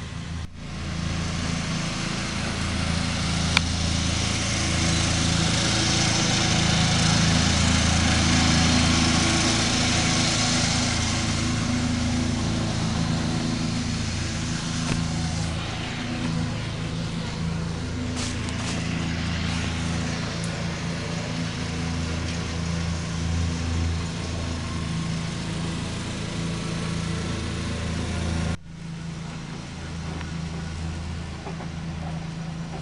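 Kubota ride-on mower's engine running steadily under load as it cuts grass, a low hum with a hiss over it that grows louder over the first several seconds and then eases.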